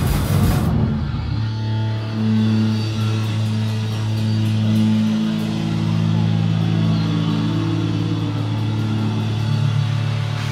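Live band playing loud electric guitar, bass and drums, the full band cutting off under a second in and leaving the guitar and bass amplifiers ringing with sustained, droning low notes.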